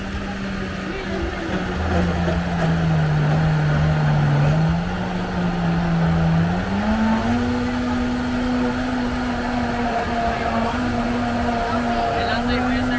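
A motor hums steadily over crowd noise. Its pitch sags a little, then steps up about halfway through and holds there.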